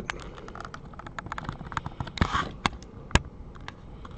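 A stack of glossy Donruss Optic football cards being handled and flipped through in the hands: a quiet run of light clicks and ticks from the card edges, with a brief slide and a few sharper clicks in the second half.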